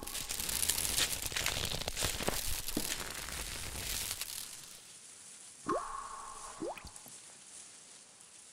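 Sound effects for an animated logo: a dense crackling, rustling noise for the first half, then two quick upward swoops, each with a ringing tone, about a second apart, fading out after.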